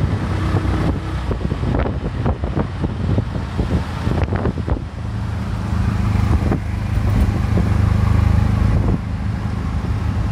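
Auto rickshaw's small engine running as it drives in traffic, with wind buffeting the microphone through the open sides. Over the first half the wind and road knocks are the loudest sound. From about five seconds in, the engine's steady low drone comes up plainly.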